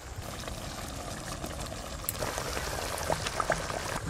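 Pangas fish curry in raw-tomato gravy bubbling in a large wok over a wood-fired clay stove: a soft, even sizzle with scattered small pops, a little louder after about two seconds.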